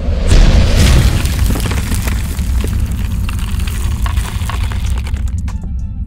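Logo-intro sound effect: a sudden deep boom followed by a long low rumble with crackling, fading out near the end.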